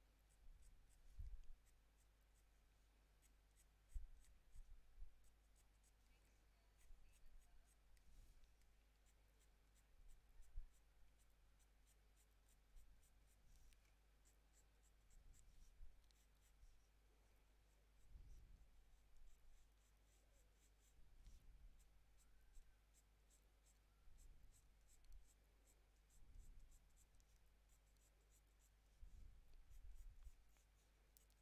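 Faint scratching of a Prismacolor Premier coloured pencil drawn in short, repeated strokes across Fabriano toned paper, with a few soft low thumps.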